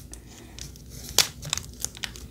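Foil wrapper of a trading card pack crinkling as it is torn and handled: faint scattered crackles, with one sharper crack a little over a second in.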